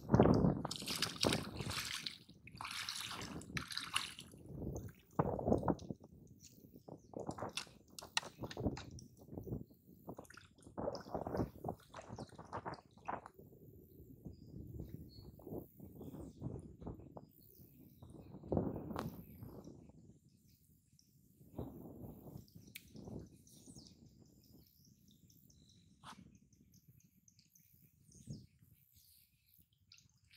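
Shallow lagoon water sloshing and splashing around a person wading and sinking a plastic-bottle fish trap, in irregular bursts that are loudest at the start and thin out to a few small drips and splashes in the last third.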